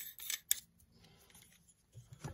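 An M42-to-Canon EF lens adapter being screwed onto a 90 mm lens by hand: a few sharp metal clicks and scrapes of the mount threads within the first half second, then quiet.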